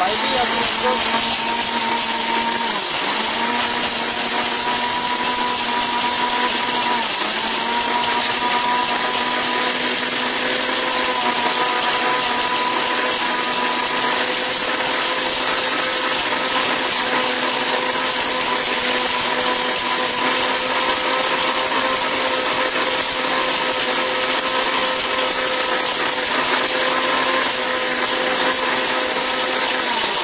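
Orpat mixer grinder running steadily at speed, its stainless-steel jar grinding whole turmeric into powder: a steady motor whine over a grinding hiss. The pitch dips briefly twice in the first several seconds.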